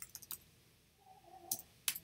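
Computer keyboard keystrokes as a word is typed: a few quick light clicks at the start, then two sharper key clicks near the end.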